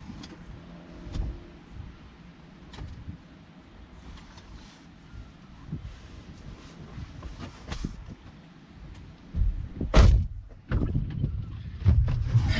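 Rustling and small knocks inside a pickup truck's cab as someone handles things in the back seat, then a loud thump about ten seconds in as a truck door is shut.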